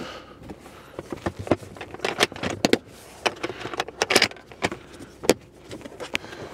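A Neewer hard plastic equipment case being handled and shifted inside a car: irregular clicks, knocks and rattles with some rustling, a few sharper knocks standing out.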